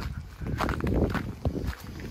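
Footsteps on icy, snow-covered pavement: a few uneven steps.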